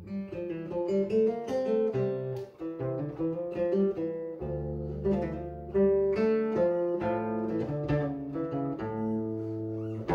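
Solo cutaway classical guitar fingerpicked, playing a Swedish folk polska in D minor: a running melody of plucked notes over held bass notes.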